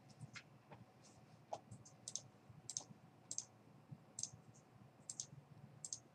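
Faint, sharp computer mouse clicks, about a dozen at irregular intervals, as tabs in a software window are clicked through.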